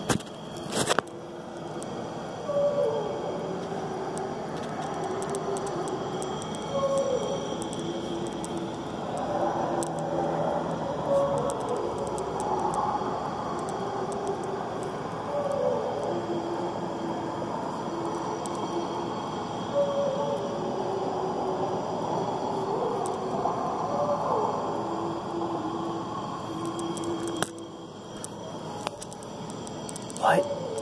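An unidentified drawn-out wailing sound outdoors at night, like a whale or a high-pitched kind of singing. Each call slides down in pitch and then holds, recurring about every four to five seconds over a steady hiss, and the sound drops away near the end.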